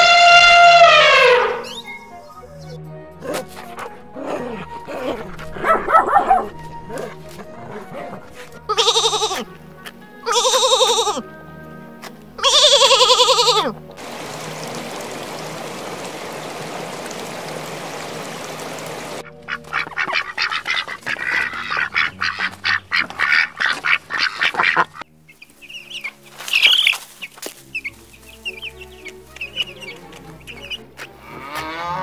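Background music with animal calls laid over it: a loud, falling elephant trumpet at the start, then three short honking calls a little before the middle. After that come about five seconds of steady hiss and a stretch of rapid clicking.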